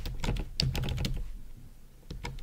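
Typing on a computer keyboard: a quick run of key clicks that thins out and grows fainter in the second half.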